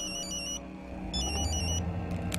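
Mobile phone ringtone: a short, high electronic melody played twice, over low sustained background music.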